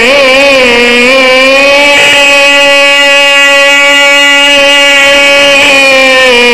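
A zakir's voice holding one long chanted note into a microphone, opening with a wavering ornament and then held steady before bending near the end.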